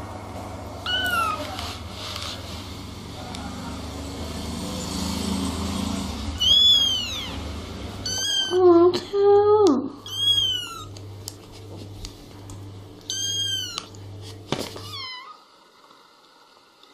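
Kittens meowing: about eight short, high-pitched meows, each rising and then falling in pitch, several of them in quick succession around the middle.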